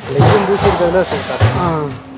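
A man talking, with a short burst of noisy handling sound near the start.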